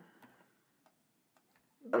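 A few faint, separate clicks of computer keys being pressed, about half a second apart.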